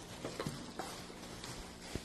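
A few faint taps and light handling noises from plastic tie-dye squeeze bottles and gloved hands on a plastic-covered table, with a sharper tick near the end.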